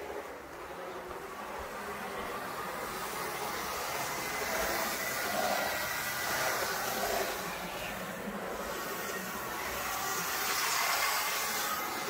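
HO-scale IHC Premier dual-motor GG-1 model electric locomotive running fast on the track: a steady whir of its two motors and gearing with wheel noise on the rails, growing louder and softer as it passes. It runs freely now that the hardened grease that seized one gear tower has been cleaned out.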